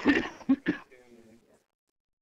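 A man's laugh trails off in short breathy bursts within the first second, with a little faint speech after, then quiet.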